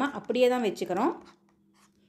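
A woman's voice speaking for about a second, then a short near-silent pause with only a faint steady hum.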